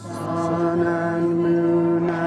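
Crowd singing a hymn together, starting a new note just after a short breath and holding it steadily.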